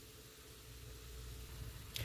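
Faint steady hiss with a low hum underneath: quiet room tone, with no distinct event.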